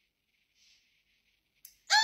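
A faint breath, then near the end a woman's loud, high-pitched vocal exclamation that sets in suddenly; before it, near silence.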